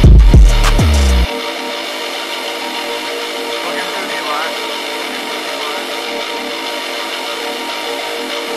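A hard trap metal instrumental beat at 100 BPM: booming 808 bass and drum hits play for about the first second, then cut out suddenly, leaving only the melodic layer of sustained notes playing on.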